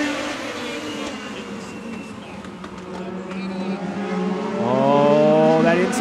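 A pack of Legend race cars running hard, their Yamaha motorcycle-derived engines at high revs. The pitch eases down at first, then rises and gets louder from about four and a half seconds in as the cars accelerate.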